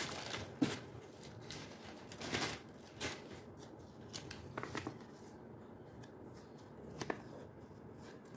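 Unpacking handling sounds: plastic wrapping and a paper card rustling in the hands in short, scattered bursts, with a sharp knock about half a second in.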